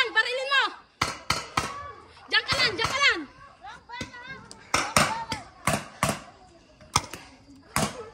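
Paintball markers firing: about a dozen irregular sharp pops, some in quick pairs, with distant shouting from players in between.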